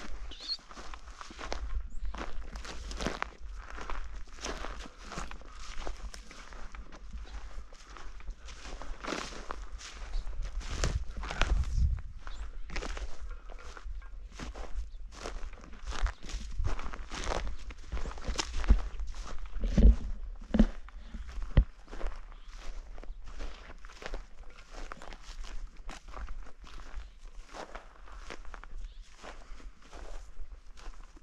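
Footsteps on dry grass and dirt at a steady walking pace, with a few louder thuds about two-thirds of the way through.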